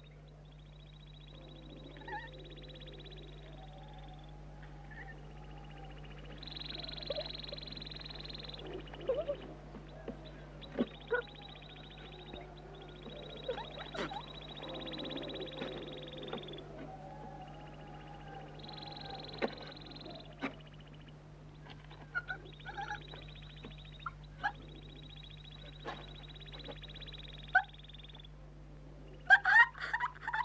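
Quiet soundtrack with a steady electrical hum under it and faint high, drawn-out bird-like calls that come and go every few seconds, with a few small clicks. A short laugh breaks in near the end.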